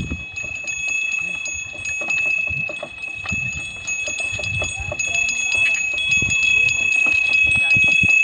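Neck bells on a pair of bullocks ringing and jingling steadily as the team walks, pulling a wooden cart. Occasional low thumps sound underneath.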